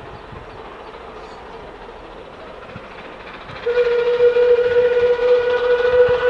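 Steam locomotive approaching, with a faint steady rumble at first. About two-thirds of the way in, its whistle sounds one long, loud, steady note that is still going at the end.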